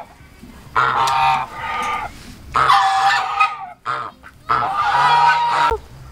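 A group of domestic geese honking loudly in three bouts of about a second each, separated by short pauses.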